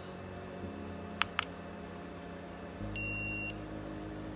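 An i2C Face ID programmer's buzzer gives two short blips a little over a second in, then one steady beep of about half a second near the end. The beep signals that the data write to the Face ID flex has finished successfully.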